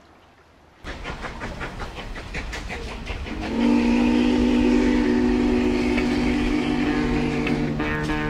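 A rapid clattering rumble starts suddenly about a second in. From about three and a half seconds a loud, sustained, horn-like chord of several steady tones comes in, and a lower tone joins near six seconds.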